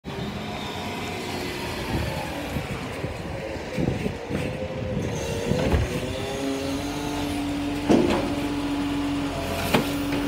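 Volvo side-loading garbage truck's diesel engine running as the truck pulls up to the bins. About six seconds in, a steady whine joins it as the automated arm grips a wheelie bin and starts to lift it, with a couple of sharp knocks from the bin and arm near the end.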